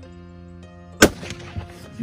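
A single rifle shot about a second in, sharp and loud, over background music.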